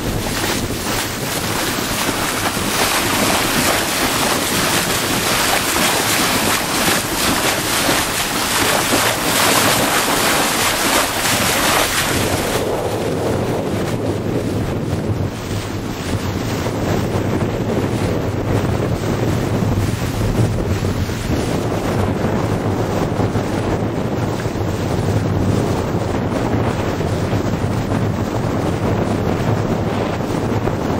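Wind buffeting the microphone over the rush and splash of water along the hull of a sailboat under way in choppy water. About twelve seconds in, the high hiss drops away, leaving a lower rush and rumble.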